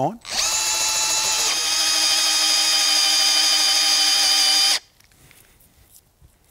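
Cordless drill turning a long auger bit as it bores into a living tree trunk, cutting the hole for a treehouse attachment bolt. The motor whine starts just after the beginning, holds steady with a slight shift in pitch after about a second, and cuts off sharply about three-quarters of the way through.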